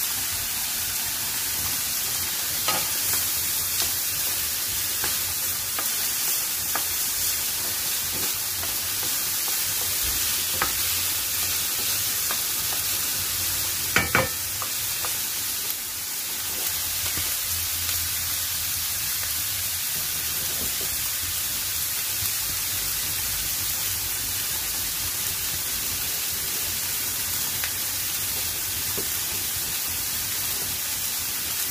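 Onions and red and green peppers sizzling as they sauté in olive oil in a pan: a steady frying hiss. A few light knocks against the pan come through, the loudest about halfway through.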